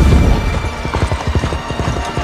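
Several horses galloping, a rapid, irregular run of hoofbeats, with background music underneath.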